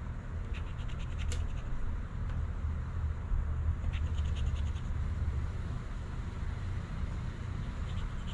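A metal scratcher coin scraping the coating off a paper scratch-off lottery ticket in groups of short, quick strokes, over a steady low hum.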